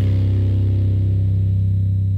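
Soundtrack music holding one sustained low chord while its higher tones fade away.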